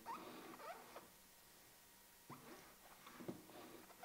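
Near silence: room tone with a few faint short chirps in the first second and light ticks a little after two and three seconds in.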